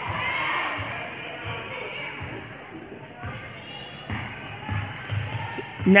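A basketball being dribbled on a gym floor, a series of irregular low thuds. Under it is the chatter of crowd voices in a large gymnasium.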